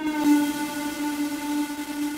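Electronic music: a single sustained synthesizer note with a hiss above it, held steady.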